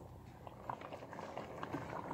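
Thick fresh tomato pulp boiling in a large pot, bubbling faintly with scattered small pops.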